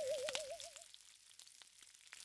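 Faint crackling and sizzling of a campfire with meat roasting on a spit, fading away. A single wavering whistle-like tone trails off in the first second.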